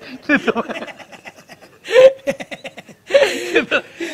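Men laughing in bursts of chuckles, with a loud burst about halfway through and another near the end.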